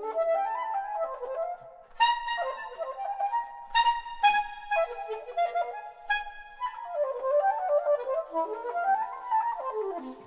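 Solo soprano saxophone playing fast, flickering runs of notes in its middle range, with a few sharp, bright accented notes between about two and six seconds in.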